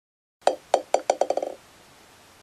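A small hard ball bouncing, as a sound effect: about eight ringing bounces that come faster and faster and fade as it settles to rest.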